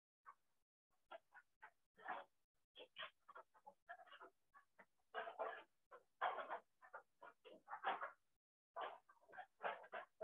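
Faint animal yelps, short and high, coming in quick irregular runs with short gaps between them, heard through a video call's narrow-band audio.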